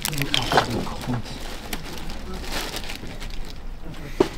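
Indistinct talking with light crinkling of a plastic snack-bar wrapper.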